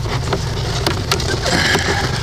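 A motor running steadily with a low rumble, with scattered light clicks and knocks over it.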